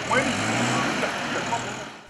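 Pickup truck engine running as the truck moves off, with street noise, fading toward the end.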